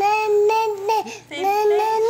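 A baby's voice making long, high-pitched, drawn-out whining sounds, two in a row with a short break between them, on the edge of crying.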